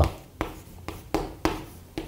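Chalk writing on a chalkboard: a series of sharp taps and short scratching strokes, about one every half second.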